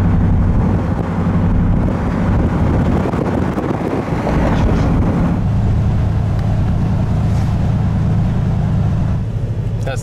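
Steady engine hum and road noise of a moving car, heard from inside the cabin, with a broader rushing swell about two to five seconds in.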